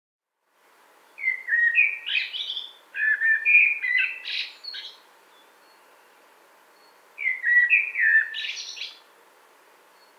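Common blackbird (Turdus merula) singing: three fluty, warbled phrases, each starting on lower whistled notes and ending in higher, thinner notes. There are two phrases back to back in the first half, then a pause, then a third phrase.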